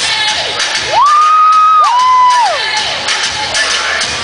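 Dance music playing loudly while a crowd of children cheers. Two long high whoops glide up, hold and fall away, one about a second in and the next overlapping it about two seconds in.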